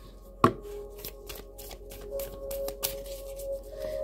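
A deck of oracle cards being shuffled by hand: a sharp tap of the cards about half a second in, then a run of faint short ticks as the cards slide and knock together.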